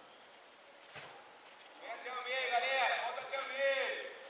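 Quiet at first with one faint knock about a second in, then voices calling out across the pitch for the last two seconds, in drawn-out, rising and falling shouts.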